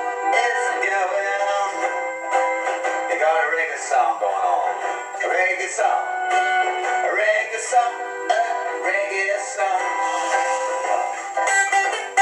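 A man singing a reggae song while strumming a guitar. The sound is thin, with no bass.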